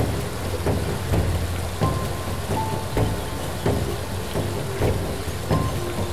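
Steady rushing of water from a small waterfall on a muddy stream, with background music with a steady beat, about one and a half strokes a second, and short melodic notes over it.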